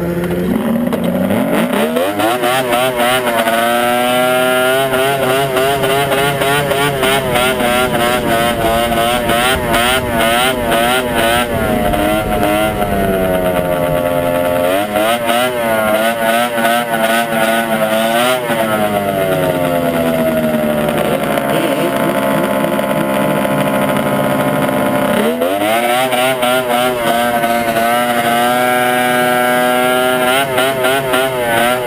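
Ski-Doo Mach 1 snowmobile's 700 two-stroke twin pulling away from idle about a second in, then running under varying throttle with its pitch wobbling up and down. It eases off around the middle and again for several seconds later on, then picks up once more near the end.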